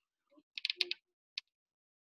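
A few faint, quick clicks in a short cluster about half a second in, then one more single click a moment later.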